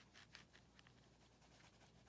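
Faint scratchy strokes of an oil pastel rubbed across drawing paper, shading in colour.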